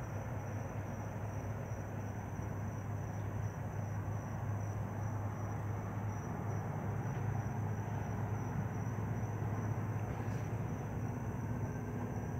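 Aquarium filter pump running: a steady low mains hum with an even wash of water noise over it.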